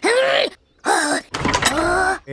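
A cartoon bunny character's wordless voice: three short vocal sounds in a row, each rising and then falling in pitch.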